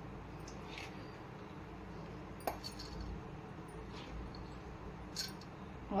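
Quiet kitchen room tone with a steady low hum, broken by three faint light clicks spread through it.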